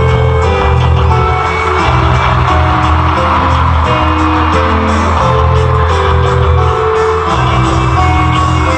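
A live rock band playing loudly through a concert PA, heard from the audience, with heavy bass and drums under a stepping melody line.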